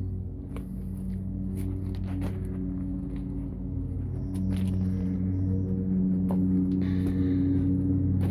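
Steady low hum of a running engine, with a few light footsteps on gravel.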